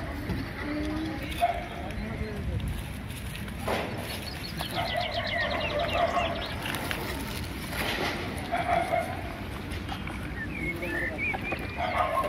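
Outdoor ambience with birds chirping in short quick series. A held mid-pitched call sounds a few times in the distance.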